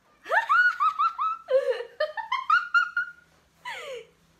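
A woman's high-pitched giggling in two runs of quick short notes, ending with a brief falling cry.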